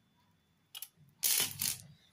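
Hands handling earrings and their card backing as one pair is put down and the next picked up: a small click, then a brief louder burst of rustling and clattering, then a few faint clicks.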